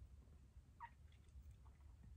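Near silence: room tone with a steady low hum, and one faint short high sound a little under a second in.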